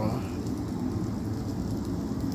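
Sausage links and meat sizzling on an electric grill, a steady hiss with faint small crackles.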